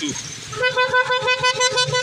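A vehicle horn held on one steady note from about half a second in, over the low rumble of road traffic.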